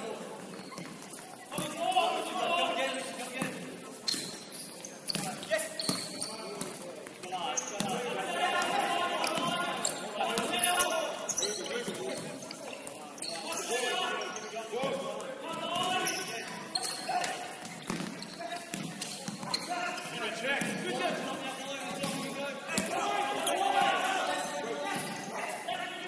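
Futsal being played on a wooden indoor court: the ball knocked and bouncing in short strikes under players' shouts and calls, with one louder sharp hit a little past halfway.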